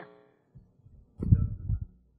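A short cluster of low, muffled thumps and rumble starting a little over a second in and lasting under a second.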